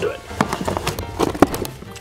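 Small plastic toy dinosaur figure being pulled free of its packaging mount by hand: a few sharp clicks and snaps, the loudest about one and a half seconds in, over background music.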